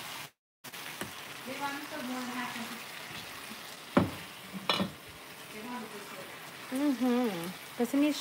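Onions sizzling in a skillet over a gas burner as they are stirred with a spatula, with two sharp knocks about four and nearly five seconds in. The sound cuts out for a moment just after the start.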